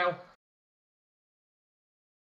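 A spoken word ('now') ending about a third of a second in, then complete digital silence with no sound at all.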